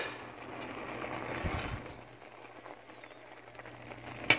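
Soft, steady bubbling hiss of a pot of red kidney beans boiling hard in water on the stove.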